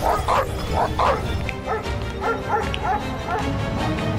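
Several dogs barking and yapping in quick succession, a few barks a second, over background music with a low rumble.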